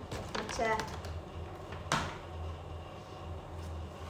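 A single sharp tap of kitchenware on a hard surface about two seconds in, with a few fainter clicks and a low steady hum underneath; a brief spoken phrase comes just before it.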